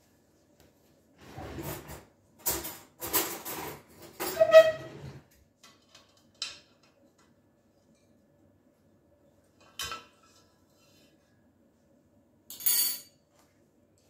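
Metal bundt pan and wire cooling rack clanking and rattling together as a cake is flipped out of the pan onto the rack, with one ringing clank about four and a half seconds in. A few lighter knocks and a short scrape follow later.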